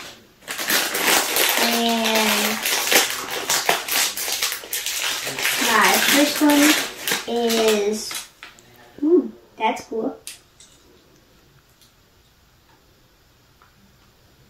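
Shiny plastic blind-bag wrapper being crinkled and torn open by hand: a loud, dense crackling for about eight seconds, then a few short clicks, then quiet.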